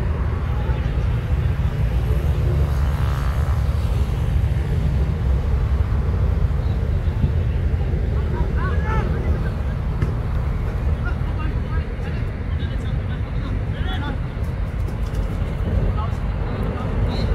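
Outdoor ambience at a football pitch: a steady low rumble with faint, distant shouts and calls from players.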